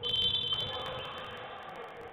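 Referee's whistle blown once: a shrill blast starting abruptly, loudest for the first half second and fading over about a second, stopping play.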